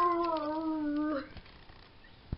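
A dog's long, drawn-out whine: one held call with a slightly wavering pitch that stops about a second in.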